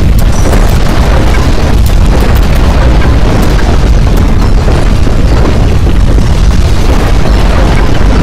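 Loud, continuous, overdriven rumbling with crackling and rattling throughout: the sound of violent earthquake shaking.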